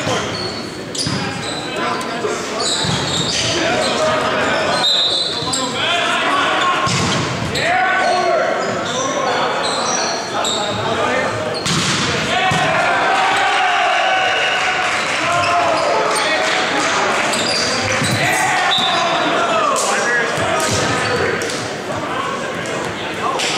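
Volleyball rally in a large, echoing gym: players shouting calls to each other over sharp slaps of the ball being hit.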